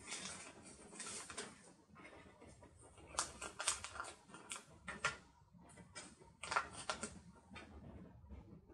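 Paper rustling and crackling as a booklet of sticker sheets is handled and bent to peel stickers off, with light taps as a sticker is pressed onto a planner page. The noises come in short irregular clusters.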